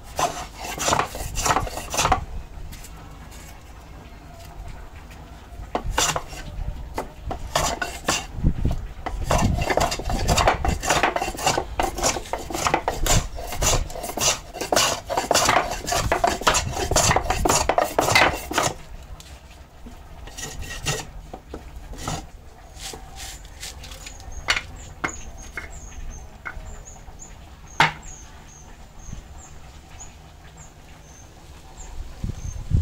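Hand scraping of a hardwood block with a small metal blade, in quick repeated strokes: a few at the start, a dense run through the middle, then sparser, quieter strokes.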